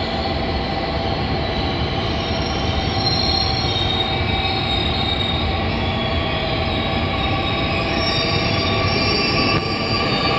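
JR Kyushu 885-series electric multiple unit pulling out of the station and gathering speed past the platform, with a steady rumble. Over the rumble run high whining and squealing tones from its running gear, some creeping up in pitch as it speeds up.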